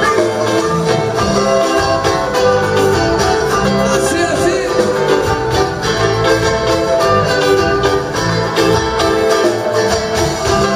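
Live band music with electric bass and plucked string instruments, in a Latin American style, playing on without a break.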